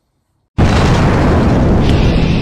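A moment of dead silence, then about half a second in an explosion sound effect bursts in loud and rumbles on: the sound of a fiery title sting.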